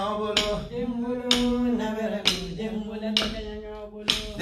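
A man singing a song in long, held notes, with a sharp click about once a second keeping time.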